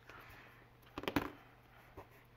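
Quiet, faint handling of scrapbook paper as folded corners are pressed flat by hand, over a low steady hum.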